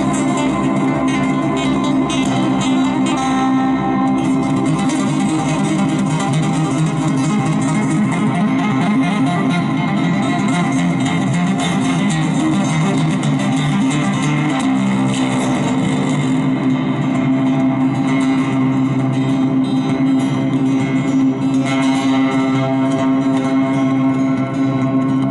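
Solo roundback acoustic-electric guitar playing a dense, continuous instrumental piece of picked and two-handed tapped notes ringing over each other at an even level.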